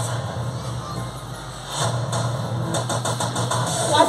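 Machine-like sound effect played over the stage speakers for the villain's freeze-ray gadget going off wrong: a deep rumble, then about two seconds in a louder motor-like sound with a run of rapid clicks, over a steady low hum.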